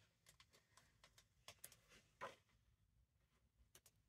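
Near silence with faint, brief rustles and ticks of paper as the pages of a large hardback book are turned by hand, the clearest about two seconds in.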